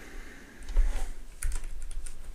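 Computer keyboard typing: a run of quick keystrokes in the second half, preceded by a low thump a little under a second in.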